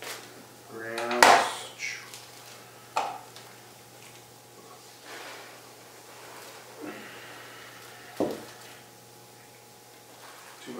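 Kitchen meal-prep handling: plastic food containers and lids knocking on the countertop, with sharp knocks about three and eight seconds in, and dry oatmeal poured from a canister around the middle. The loudest sound is a brief pitched sound about a second in.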